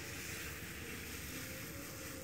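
Thin maida dosa batter sizzling on a hot dosa pan: a faint, steady hiss.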